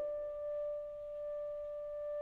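Saxophone holding one long, quiet, steady note with an almost pure, bell-like tone, between faster passages of a solo etude.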